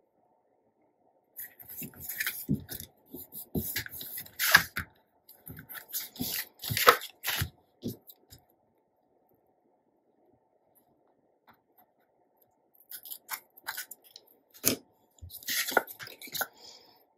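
Paper and card being handled on a cutting mat: quick rustles and light taps in two bursts, with a pause of about four seconds between them.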